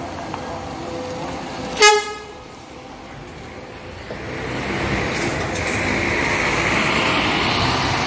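An intercity coach bus gives one short horn toot, then its engine and tyres grow steadily louder as it drives past close by.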